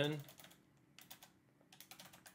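Typing on a computer keyboard: a few separate keystrokes, a short group of about four around a second in, and a quicker run of key presses near the end.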